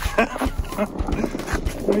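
A child's skateboard rolling on cracked asphalt, its wheels giving a run of irregular low knocks and clacks, with a little voice over them.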